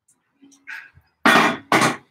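Two short, breathy bursts of a person's voice about half a second apart, loud and hissy, coming after a second of near quiet.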